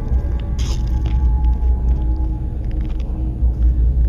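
Steady low rumble with a faint crunch about half a second in.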